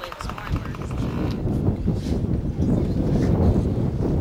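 Wind rumbling on the microphone, growing a little louder after about a second and a half, with faint voices in the background.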